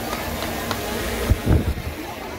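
Steady outdoor street background noise, with a couple of low thumps on the microphone about one and a half seconds in.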